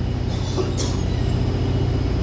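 Steady low mechanical hum of a running motor, with a fast even pulse in its low rumble.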